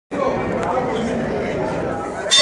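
Spectators around a boxing ring chattering, many voices overlapping at a steady level.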